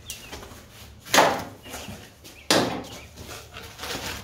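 Taped cardboard box flaps being pulled open: two sharp tearing rips, about a second in and again about two and a half seconds in, with quieter cardboard handling between.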